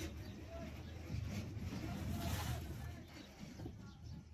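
Fired clay bricks being handled and stacked, with a short scrape about two and a half seconds in, over a steady low rumble.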